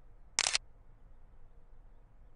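Smartphone camera shutter sound: a single short click about half a second in as a photo is taken.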